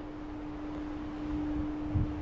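A steady machine hum, one low held tone over a faint background hiss.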